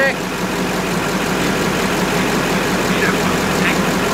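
LBZ Duramax 6.6 L V8 turbo-diesel idling steadily at normal operating temperature, through a 5-inch straight-pipe exhaust.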